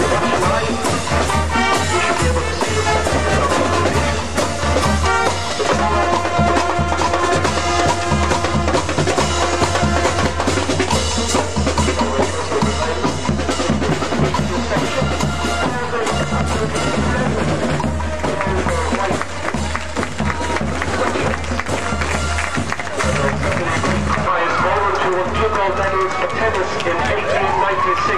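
A marching band playing brass with a steady drum beat.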